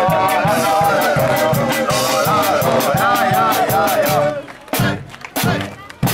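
Street brass band playing a tune over a steady drum beat. About four seconds in the music breaks off, leaving a few scattered drum hits and voices, before the band comes back in at the very end.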